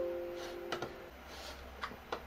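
A short electronic tone of two steady pitches sounding together at the start and fading out after about a second, followed by a few light computer mouse clicks.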